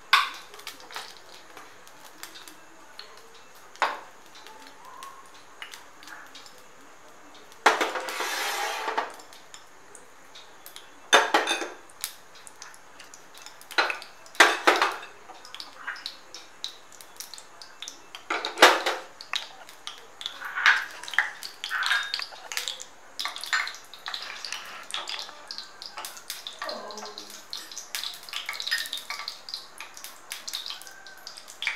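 Kitchen clatter: scattered clinks and knocks of dishes and utensils, with a noisy rush lasting about a second and a half about eight seconds in and a denser run of small clicks in the last third.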